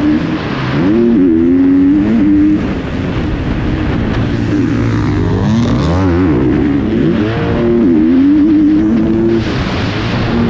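2021 GasGas 250 motocross bike's engine revving, heard from the rider's helmet camera. The pitch climbs and drops over and over as the rider accelerates, shifts and backs off through the track.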